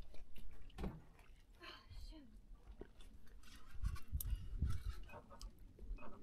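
Faint, indistinct talk, with a low rumble underneath and a few small clicks.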